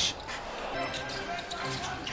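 Basketball bouncing on the court over the murmur of an arena crowd.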